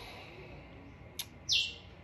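A bird's single short, high chirp that slides down in pitch, about one and a half seconds in, with a brief click just before it over faint background noise.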